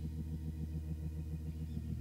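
Soft background music: a low, sustained chord that wavers about five times a second, playing under a pause in the prayer.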